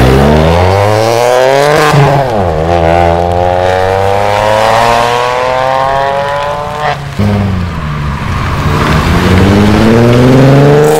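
Ford Fiesta hatchback accelerating hard away, its engine revving up through the gears. The revs climb, drop at an upshift about two seconds in, pull steadily up through the next gear, drop again at a second shift around seven seconds in, then climb once more.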